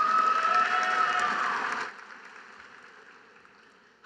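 Audience clapping with one long held cheer over it, strong for about two seconds and then dying away.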